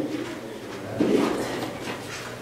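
A brief low hum from a person's voice, starting suddenly about a second in and fading away, in an otherwise quiet room.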